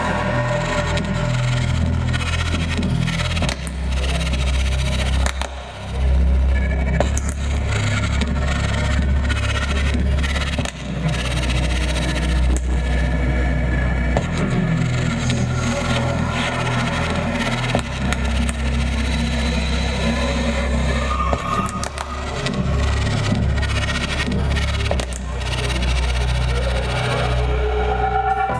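Live electronic music played by a band with a drum kit: heavy sustained bass notes that shift in pitch every few seconds, under a dense noisy texture with frequent drum and cymbal hits.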